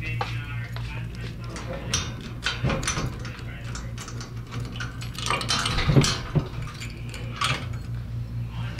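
A bunch of metal keys jangling and clinking as they are handled, with scattered clicks and a heavier knock about six seconds in, over a steady low hum.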